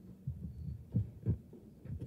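Handling noise from a gooseneck table microphone being pushed across the table: a few short, dull low thumps.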